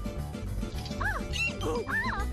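Cartoon score music, with about four short squeaky yelps from a cartoon character's voice in the second half, each rising and falling in pitch.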